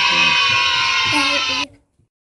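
A voice over loud music, both cutting off suddenly near the end.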